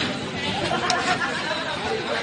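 A group of men talking and calling over one another, a jumble of overlapping voices, with a brief click about a second in.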